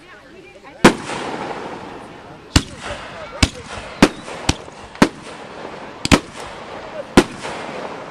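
Aerial fireworks going off: about nine sharp bangs at uneven intervals, two in quick succession about six seconds in, with crackling between them.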